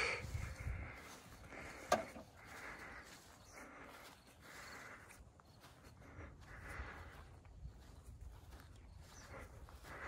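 Faint, soft footsteps on grass, a swish roughly every second, with one sharp click about two seconds in.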